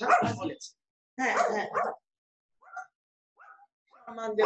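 A person's voice coming through a video call in two short bursts, followed by two faint, short sounds.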